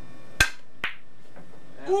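A miscued pool shot: the cue tip glances off the cue ball with one sharp click, followed by a lighter, briefly ringing click about half a second later.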